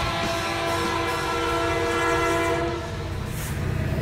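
A held chord of several steady tones that fades out about three seconds in.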